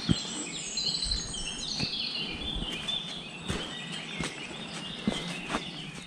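Songbirds singing in woodland, a busy, overlapping run of short high phrases, over a low background hiss. A few soft thuds are scattered through it.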